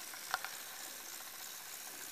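Quiet room tone inside a church: a steady faint hiss, with one faint click about a third of a second in.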